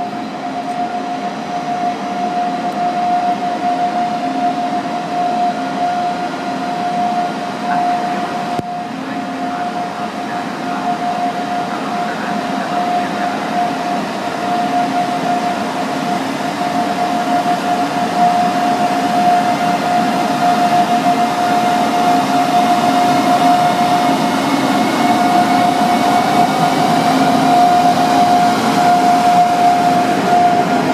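Electric locomotive hauling an intermodal freight train of truck trailers on rail wagons, approaching along the track and passing close by, growing steadily louder. A constant high tone runs through it.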